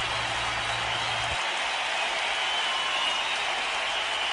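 Studio audience applauding steadily, with a low hum underneath that stops about a second and a half in.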